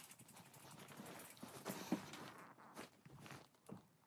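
Faint, irregular patter of a blue heeler puppy's paws and claws on a hard floor as it trots about, with a few slightly louder knocks.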